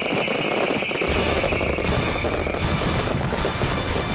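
Fireworks going off in a rapid run of bangs and crackles, with background music under them.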